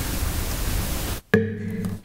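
Steady hiss of room noise through the meeting's sound system, cutting out abruptly just over a second in, then returning with a click and a steady electrical hum.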